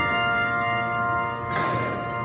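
Handbell choir ringing: brass handbells sounding a chord of many long steady tones that slowly fades, with a short noisy burst about a second and a half in.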